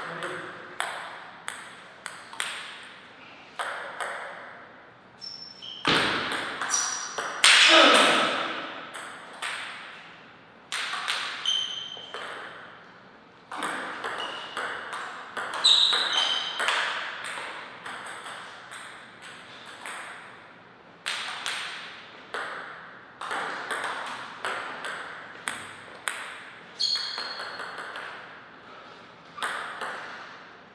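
Table-tennis ball clicking back and forth between paddles and table in quick rallies, each hit with a short bright ping, with short pauses between points. A louder burst of sound stands out about eight seconds in.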